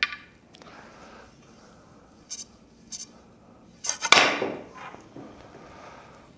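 A carom billiards shot: the cue tip strikes the cue ball right at the start, then the balls roll across the cloth. Short sharp clicks of ball contacts come about two and three seconds in, and a louder clack about four seconds in.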